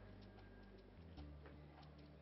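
Faint background music: low held notes that change every second or so, with light clicks ticking irregularly over them.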